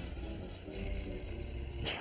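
A low, animal-like creature growl, with one sharp crack near the end.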